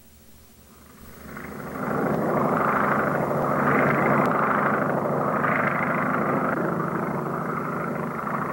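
Propeller airplane engine drone, fading in over about two seconds and then holding steady with slow swells about every second and a half.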